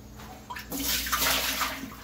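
Yogurt whey pouring out of a stoneware mixing bowl and splashing, loudest for about a second in the middle.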